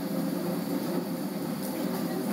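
Small top-loading spin dryer running with a steady, even whirring hum.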